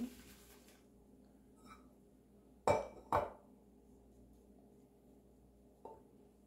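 Shaving gear clinking at the sink: two sharp clinks of hard objects about half a second apart, with a fainter tap about a second in and another near the end.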